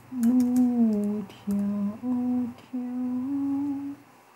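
A woman humming a slow, wordless tune in four held phrases, the pitch gliding down at the end of the first phrase and stepping up in the last.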